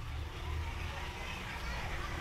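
Roadside market ambience: a steady low rumble under faint background chatter of voices.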